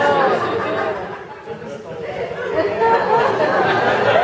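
Indistinct talking: a man's voice and chatter that the recogniser could not make out as words, echoing in a theatre hall.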